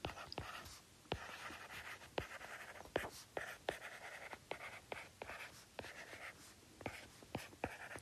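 Stylus writing on a tablet: faint, irregular taps and short scratches as each handwritten stroke is made.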